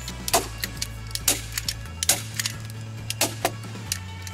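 Hand staple gun firing staples through foam rubber pipe insulation into wooden stair treads: several sharp snaps, roughly a second apart, over soft background music.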